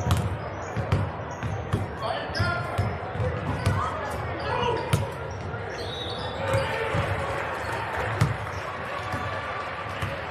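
Several basketballs bouncing irregularly on a hardwood gym floor as players dribble and shoot around, with people talking in the background.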